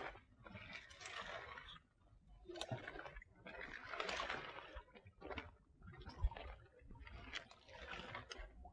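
Faint, irregular rustling and splashing in short spells as a round-framed fishing keep net is worked into shallow water through bankside plants, with a few small clicks.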